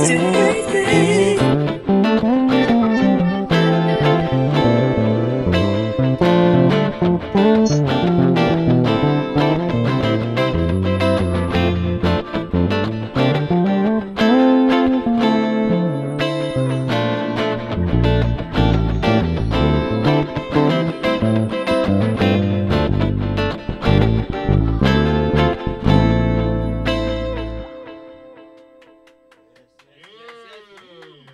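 Electric bass guitar played live over a drum-backed soul-funk track, with a moving bass line under a steady beat. The music thins out and fades away over the last couple of seconds.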